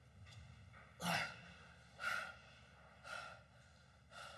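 A man breathing hard after being knocked flat in a sparring bout: three heavy breaths, about a second apart.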